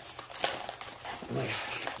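A paper envelope being cut open and handled: crinkling, scratchy paper with a sharp click about half a second in.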